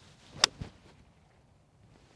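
A seven iron striking a golf ball off grass: one sharp, loud click of the clubface on the ball about half a second in, followed by a fainter knock.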